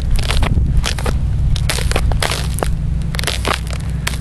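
Thin pond ice crackling and crunching underfoot with each step, a quick irregular series of sharp cracks. A steady low rumble runs underneath.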